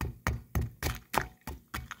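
Lumps of 250-year-old lime mortar being crushed in a bowl of white vinegar by striking them with the end of a wooden handle: a run of sharp knocks, about four a second. The mortar is being broken up so the vinegar dissolves the lime faster and frees the sand for matching.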